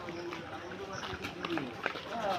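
Street sound between loud shouts: faint voices in the background with scattered light clicks and knocks.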